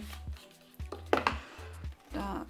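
Background music with a steady low bass, over a few light clicks and scrapes of a cardboard box being handled as its inner paperwork compartment is lifted out; the sharpest tap comes a little past a second in.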